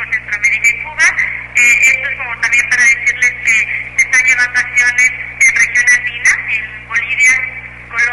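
A man's voice talking, thin and narrow like a phone recording, over a steady low hum.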